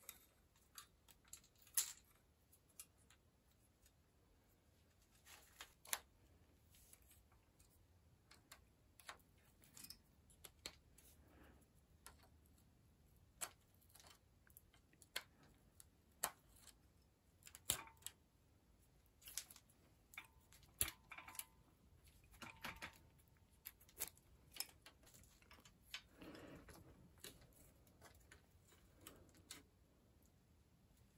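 Faint, irregular metallic clicks and clinks of hand tools on bicycle parts: a chain tool working the chain, then a Simplex rear derailleur being unbolted and handled with a spanner, with a few brief metallic rings.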